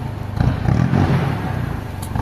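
Ford Ranger XLT pickup's diesel engine running steadily, a low, even rumble.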